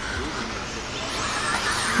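Electric 4WD RC buggies with 13.5-turn brushless motors running on a dirt track: a shifting motor whine over a steady background noise.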